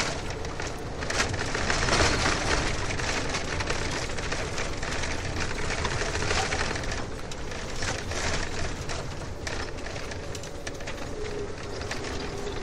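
Steady road and tyre noise of a moving car heard from inside, with a steady hum underneath.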